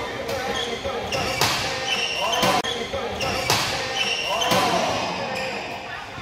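Badminton rally: rackets striking the shuttlecock about once a second, with short squeaks of court shoes on the floor between the strikes.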